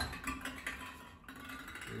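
Plastic draw balls clicking and rattling against one another and a glass bowl as a hand rummages in the bowl and picks one out.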